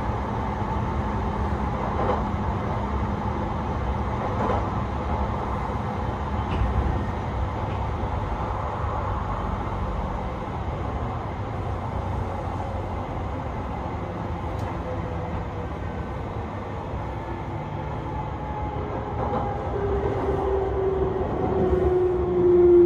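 JR East E721-series electric train running on the rails, heard from inside the car: a steady rumble of wheels and running noise. Near the end a motor whine grows louder and falls in pitch as the train slows for a station.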